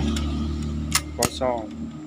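Two sharp metal clicks about a second apart from the gear-shift mechanism of a Suzuki Smash Titan's transmission being worked by hand in the open crankcase, as the gearbox is shifted down into neutral. A steady low hum runs underneath.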